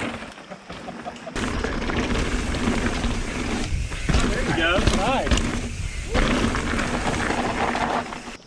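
Mountain bike ridden over rocky trail, heard from a handlebar camera: wind rushing over the microphone with knocks and rattles as the bike rolls over rock, starting about a second in. A voice calls out briefly with rising and falling pitch around the middle.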